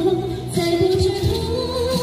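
A woman singing long, wavering held notes into a handheld microphone, amplified through a portable loudspeaker over a backing track with a beat.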